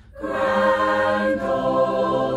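Mixed choir singing the school hymn in parts, unaccompanied. The voices come in together a moment after a short breath pause and hold sustained chords.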